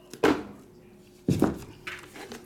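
Two thunks about a second apart as shrink-wrapped cardboard trading-card boxes are handled and set down on a tabletop.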